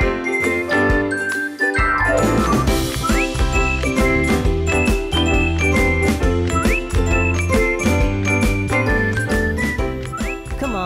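Upbeat cartoon title theme music with a bright chiming melody over a steady beat. A bass comes in about two seconds in, and short rising slide notes sound a few times.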